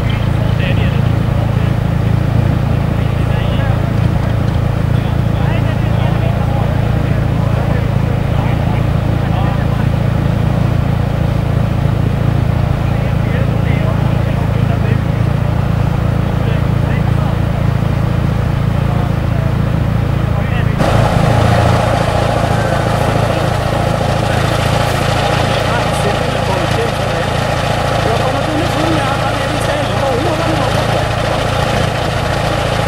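Vintage tractor engine running steadily under load while it pulls a plough. About 21 seconds in the sound changes abruptly to another recording, where an engine keeps running with more hiss over it.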